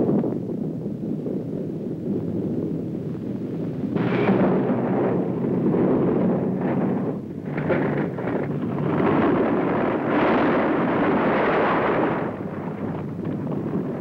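Earthquake sound effect: a loud, continuous deep rumbling roar. It swells about four seconds in, is heaviest a few seconds before the end, then eases off.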